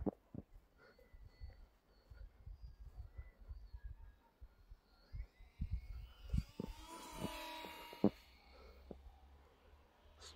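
Faint whine of the E-flite UMX Twin Otter's two small electric motors in flight. It rises in pitch a little after five seconds in and is loudest around seven to eight seconds. Under it runs a low wind rumble on the microphone, with a few sharp knocks.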